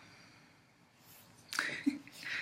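A woman's short, sudden breath noise, like a stifled sneeze or sharp intake, about a second and a half in after a faint lull.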